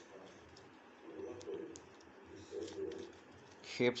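Pigeon cooing twice, low pulsed calls in the background, with a few faint pops from slime being stretched by hand.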